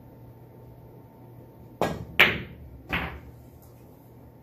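A soft pool shot: the cue tip strikes the cue ball a little under two seconds in, quickly followed by a louder click of the cue ball hitting the object ball, then a duller knock less than a second later.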